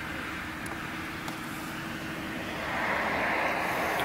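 Road traffic: a passing vehicle's tyre and engine noise swelling louder through the second half, over a steady low hum.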